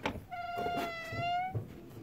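An Azawakh dog whining: one long, steady high whine of about a second, rising slightly at the end.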